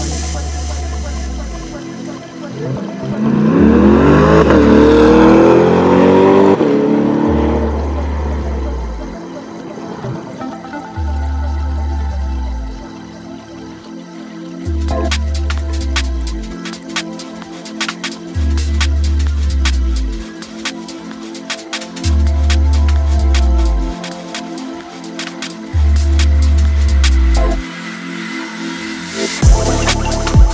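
Electronic music with a deep bass note that drops in pitch, repeating about every two seconds, and fast ticking percussion in the second half. About three seconds in, a loud sound that rises and then falls in pitch swells over the music for about four seconds.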